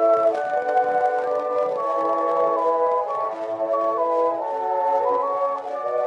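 1911 acoustic Gramophone 78 rpm record of a French tenor song: an instrumental interlude in the accompaniment, a melody of steady sustained notes with no voice, over faint surface crackle.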